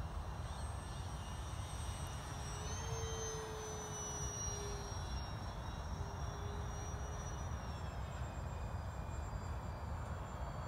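Radio-controlled model OV-10 Bronco flying past overhead: a faint propeller whine that is strongest about three seconds in and slowly drops in pitch as the plane goes by. Under it is a steady low rumble.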